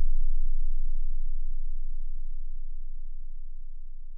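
A deep bass note from a GarageBand-made hip-hop beat ringing out and slowly fading as the track ends.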